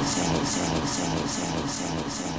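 Instrumental dance-club mashup music between vocal lines: a steady beat with a hi-hat about two and a half times a second over held bass and synth tones, slowly getting quieter.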